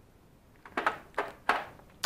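A few light clicks and taps of steel brake caliper wind-back adapters and the wind-back tool being handled over a plastic tool case, starting about half a second in, the last one ringing briefly.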